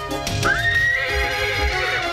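A horse whinnying, as an animated-film sound effect: the call rises sharply about half a second in, then holds high and wavering, over background film music.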